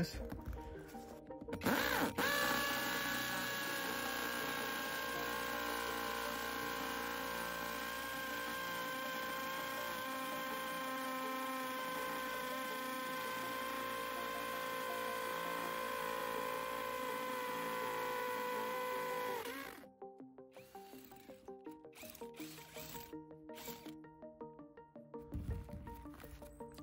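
Parkside Performance PSBSAP 20-Li C3 cordless hammer drill running at speed two in hammer mode, boring a 10 mm hole into concrete. It makes a steady whine that starts about two seconds in and stops near the twenty-second mark, its pitch sagging slightly just before it stops.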